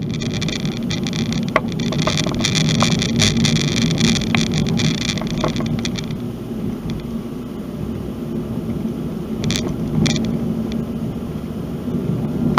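A car driving slowly over a rough, patched and potholed asphalt road: a steady low tyre and road rumble, with a dense crackling rattle over the first six seconds and scattered short knocks as the wheels go over bumps and patches.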